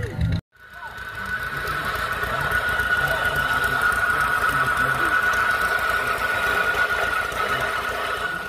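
Vintage cast-iron burr mill grinding maize kernels: a steady high whine over a fast grinding rattle. It starts about half a second in, after a brief silence, and swells up over the next second or two.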